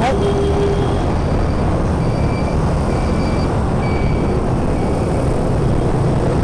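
Motor scooter running steadily through busy motorbike traffic: constant engine and road noise.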